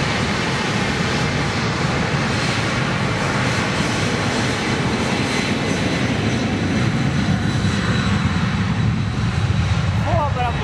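Boeing 767-300ER's twin jet engines at takeoff thrust during the takeoff roll: a loud, steady rush with a faint high whine, the low rumble growing stronger over the last few seconds as the aircraft lifts off.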